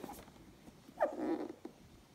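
A dog gives one short vocalisation about a second in: a quick falling yelp that runs into a brief rough whine. Faint rustling of cardboard toy boxes being handled sits beneath it.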